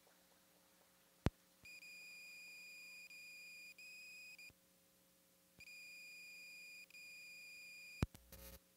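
A faint, steady, high electronic beep tone in two long stretches, of about three seconds and about two and a half seconds, each broken by brief gaps, after a single click about a second in. A low steady hum runs underneath.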